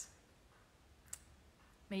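A pause in a woman's speech: quiet room tone with a single short click about halfway through, then her voice starts again near the end.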